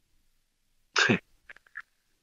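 A man sneezes once, sharply, about a second in, the voiced part falling in pitch, followed by a few faint clicks.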